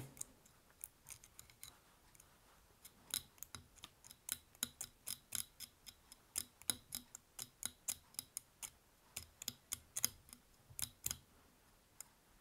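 Faint, quick small clicks, irregularly two or three a second, from a dubbing needle being raked through the silver EP Brush tinsel body of a streamer held in a fly-tying vise, picking out trapped fibres.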